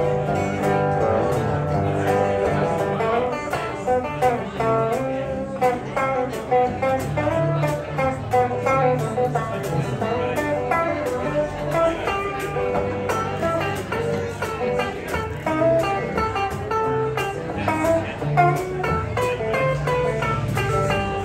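A small live band playing an instrumental passage of a slow, blues-tinged song. Two electric guitars pick melody lines and chords over a steady low line, with no singing.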